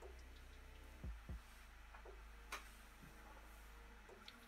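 Near silence with a faint steady hum. A marker pen works on paper, with two soft thumps about a second in and one sharp tick a little past halfway.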